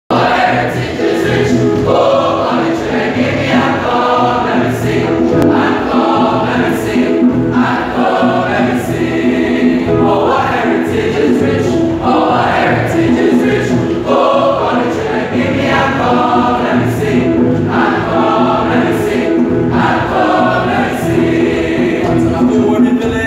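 Male school choir singing together, loud and steady.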